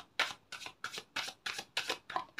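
A tarot deck being shuffled by hand, cards slapping and sliding against each other in a steady series of short strokes, about three a second.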